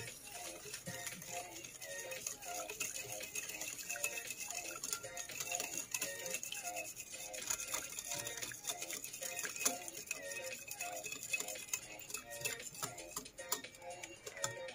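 Wire whisk beating a runny egg, milk and sugar batter in a ceramic bowl: a fast, steady clicking and scraping of the wires against the bowl.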